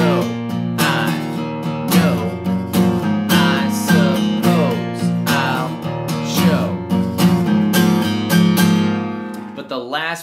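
Steel-string acoustic guitar strummed in a steady rhythm of about two strums a second through a four-chord progression: a B power chord, then shapes with the open low E string, the E string at the third fret, and the open A string ringing out. The last chord rings and fades near the end.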